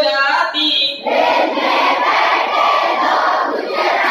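Large group of schoolchildren singing a Hindi action song in unison. About a second in, the singing breaks off into loud, noisy group shouting that lasts nearly three seconds.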